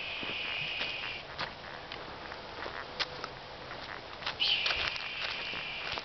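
Footsteps walking, with two raspy, hissing high-pitched hawk calls, one at the start lasting about a second and a longer one starting past the four-second mark.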